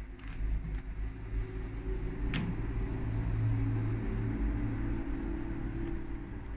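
A low, steady engine hum that swells in the middle and eases toward the end, with one sharp click about two seconds in.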